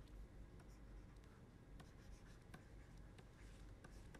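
Faint taps and scratches of a stylus writing on a pen tablet: a few light, irregular clicks over a low steady hum.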